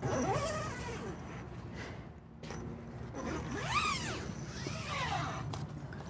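Zipper on a van's mesh door screen being run by hand, in three long strokes that rise and fall in pitch: one at the start and two more in the second half.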